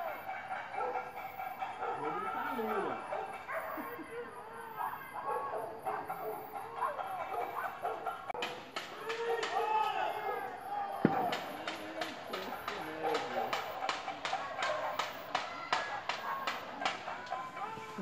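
Distant shouting voices from a night-time panelaço protest, with pots and pans being banged. From about halfway through, the banging becomes a fast run of repeated metallic strikes, several a second.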